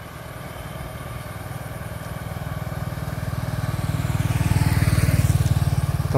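A small motorbike approaching and passing close by, its engine growing steadily louder and loudest about five seconds in.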